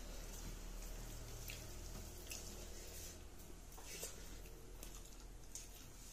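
Faint, wet, sticky clicks of eating by hand: fingers mixing cooked rice with curry on a banana leaf, with mouth sounds while chewing, a soft click about every second.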